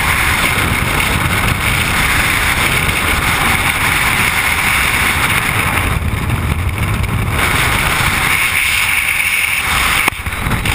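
Freefall wind rushing over the camera's microphone: a loud, steady rush of air buffeting the mic, its higher hiss thinning for a moment around the middle.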